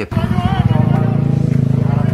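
Motorcycle engine running close by with a steady, rapid low pulse, with people's voices behind it.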